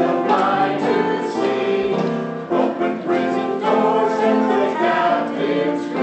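A small congregation singing a worship chorus together, many voices holding and changing notes.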